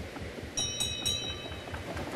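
A bell-like chime rings out bright and clear for about a second, starting about half a second in, over a faint low rumble.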